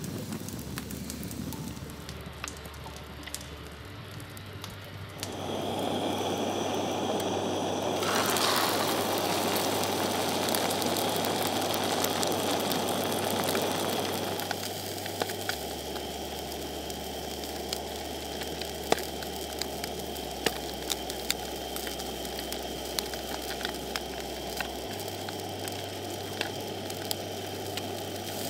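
Wood campfire of split logs burning, crackling and hissing. A louder steady hiss comes in about five seconds in and eases off around the middle, after which scattered sharp crackles go on over a softer hiss.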